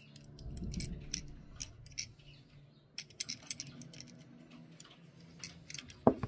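Fingers handling and prying apart a small die-cast Datsun 510 wagon model. There is a soft rubbing rumble in the first second or so, then scattered small clicks and ticks of the parts against each other, over a faint steady hum.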